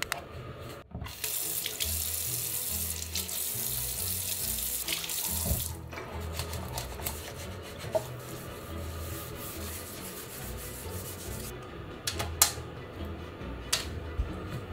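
Water running from a bathroom tap into a washbasin for about five seconds, then shut off. Two sharp knocks near the end.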